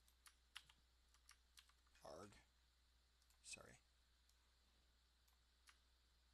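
Faint computer keyboard and mouse clicks, scattered single taps, as a figure is copied and pasted on a computer. Two brief murmured voice sounds come about two seconds in and again about three and a half seconds in.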